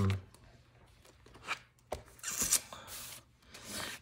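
Paper and sticker sheets being handled: a few short rustles and scrapes, the longest a little past the middle.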